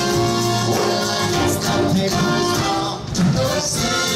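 Live big band playing a swinging pop love song, with a short dip in level about three seconds in before the band comes back in.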